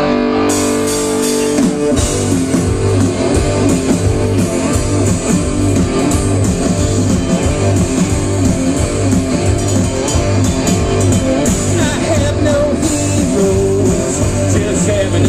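Punk rock band playing live, heard from the crowd: a held electric guitar chord rings out, then about two seconds in the full band crashes in with fast distorted guitars, bass and drums.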